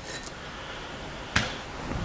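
A single light knock about one and a half seconds in, as a drinking glass is set down on a rubber non-slip mat in a plastic tray, over faint room hiss.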